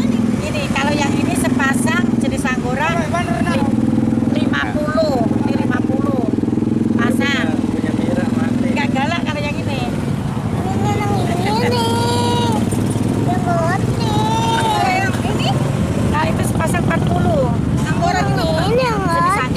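A motorcycle engine running at idle, a steady low hum that grows fainter about halfway through, under people talking.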